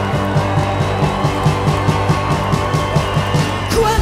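Live rock band playing an instrumental passage: sustained chords over a steady drum beat. Near the end the band breaks off the groove and a new section begins.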